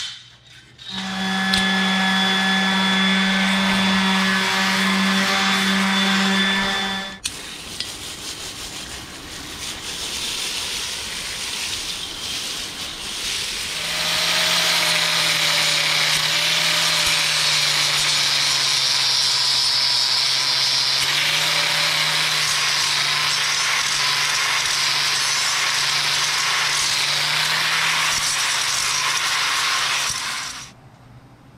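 Angle grinder cleaning dross and rust off the steel slats of a plasma cutting table. It runs steadily for about six seconds and shuts off with a click. After a quieter stretch it runs again from about halfway on, with a harsh grinding hiss as it works against the metal.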